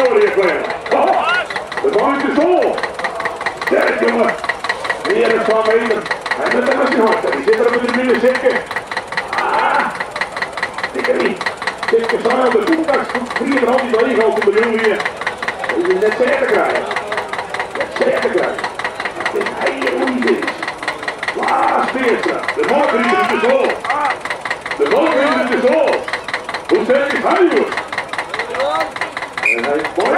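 Vintage tractor engine idling with an even knocking beat, under almost continuous talking.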